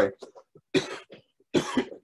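A man coughing twice, about a second apart.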